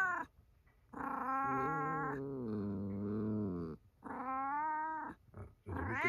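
A domestic cat's long, low growling yowl whose pitch drops partway through, followed about a second later by a second, shorter call: the warning sound of a startled cat.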